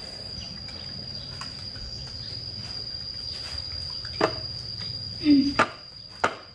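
A steady, high-pitched insect drone runs throughout. Near the end come a couple of sharp clinks of spoons against ceramic bowls.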